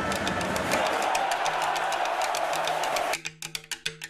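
Background music with a quick, even clicking percussion beat over a steady wash of noise. The wash cuts off suddenly about three seconds in, leaving the clicks over a low held note.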